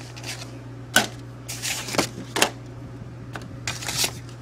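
Irregular clicks and knocks of objects being handled and moved about, about seven in four seconds, with a short rustle in the middle. A steady low hum runs underneath.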